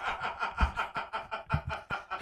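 Men laughing quietly: breathy snickers and chuckles in a run of short pulses.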